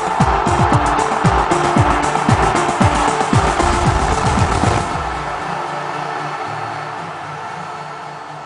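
TV sports show opening theme music: rapid electronic drum hits with falling-pitch booms, until about five seconds in the beat stops and a held chord fades out.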